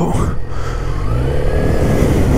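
A 2012 Yamaha XJ6's inline-four engine pulling away on a test ride, its revs rising over the first second and a half, then levelling off.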